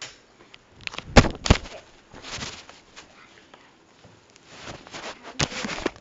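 Handling noise from a hand-held camera being moved and covered: two sharp knocks a little over a second in, then bursts of rustling.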